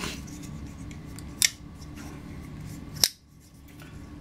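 Two sharp metallic clicks from a Koenig Arius flipper folding knife as its blade is worked, about one and a half seconds apart, the second louder.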